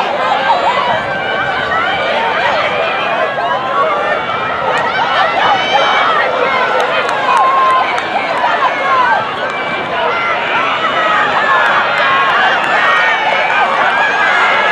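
Crowd of spectators and athletes shouting and cheering on runners in a 4x400 m relay, many voices overlapping at once.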